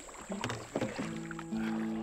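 A paddle working river water, with a few splashes and knocks in the first second. About halfway through, a guitar comes in with held, ringing notes.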